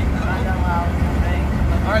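Mercedes-Benz truck running at cruising speed, heard from inside the cab as a steady low engine and road drone.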